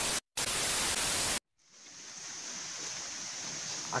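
A burst of loud static noise, hissing evenly for about a second and cutting off abruptly. After a short silence, a faint steady high hiss of outdoor background fades in.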